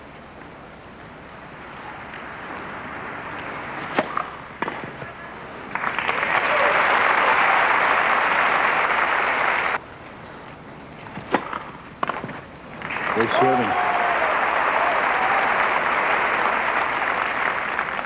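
Tennis crowd applauding in two long stretches, the first cut off abruptly just before ten seconds in. Between them come sharp racquet-on-ball strikes, a pair at about four seconds and another pair at about eleven seconds, as the serve is hit and returned.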